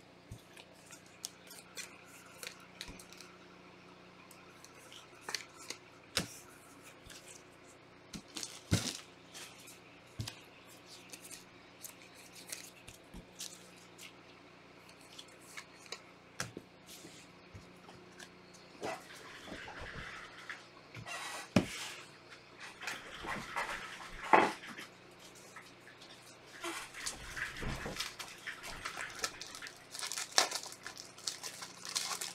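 Trading cards and their packaging being handled: faint scattered clicks and taps, then rustling and crinkling of wrappers or sleeves in the second half.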